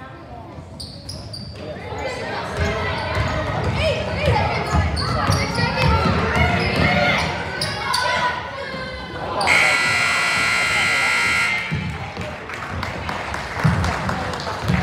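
Gym scoreboard buzzer sounding one steady tone for about two seconds, a little past the middle, marking the end of the quarter. Before it, players' and spectators' voices call out and a basketball bounces on the gym floor, all echoing in the large hall.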